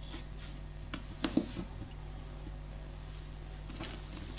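Quiet room tone with a steady low hum and a few faint short ticks a little over a second in.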